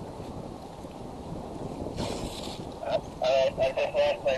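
Cloth rubbing over the camera dome, with wind on the microphone: a steady rushing noise and a brief louder hiss about two seconds in. A voice starts talking about three seconds in.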